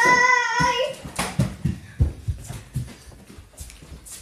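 A child's voice holding one steady high note, which stops about half a second in. It is followed by scattered light knocks and rustles.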